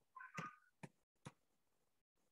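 Near silence with a few faint computer keyboard keystrokes, two sharp clicks a little under half a second apart. Just before them comes a brief faint pitched sound.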